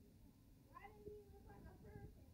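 Near silence: room tone, with a faint, short call-like sound about a second in.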